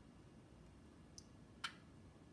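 Near silence with room tone, broken by a faint tick and then one sharp plastic click a little past a second in, as a dropper bottle and a pH pen are handled over a plastic well plate.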